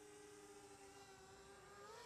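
Faint, steady whine of the MJX Bugs 19 EIS drone's brushless motors and propellers in flight in sport mode, its pitch rising slightly near the end.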